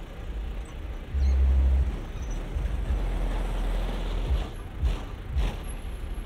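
Engines of classic American custom cars rumbling low as they roll slowly past in a line. A stronger low rumble swells for about a second, a second in, and a few short sharp knocks come near the end.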